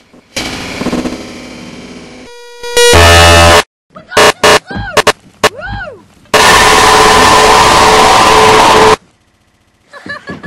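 Loud, deliberately distorted sound-effect collage. A ringing chord fades out, then comes a short beep, a clipped noise blast, a few sharp thumps with bending pitch, and a long distorted roar that cuts off suddenly near the end.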